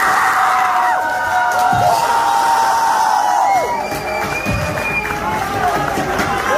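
Audience cheering and clapping, with several long held whooping cries that slide up as they begin and drop away as they end, overlapping one another and thinning out about four seconds in.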